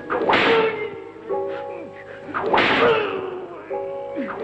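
Two whip lashes striking bare skin, sharp cracks about two seconds apart. Each crack is set up by a short held chord of dramatic film music.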